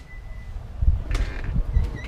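Wind rumbling and buffeting on the microphone in uneven gusts, with a few dull thumps, as the front door opens to the outside.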